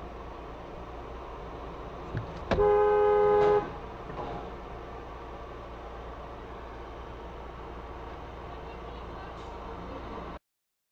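A car horn sounding once in a steady two-note blast of about a second, a few seconds in, over the steady low hum of an idling car heard from inside its cabin.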